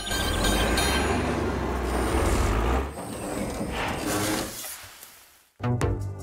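Cartoon sound effects of a small digging vehicle at work, a low engine rumble under a dense noisy churn, mixed with background music. The rumble stops about three seconds in and the rest trails away to a moment of silence near the end.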